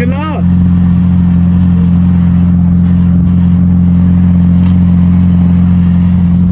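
Car engine idling with a loud, steady low hum that does not change in pitch.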